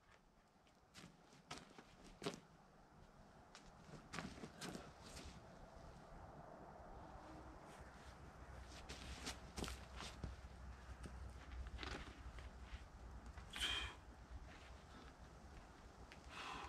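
Faint, scattered scuffs and taps of a boulderer's climbing shoes and hands on rock while working an overhang, with one louder scrape a couple of seconds before the end. A low rumble of wind on the microphone sits underneath.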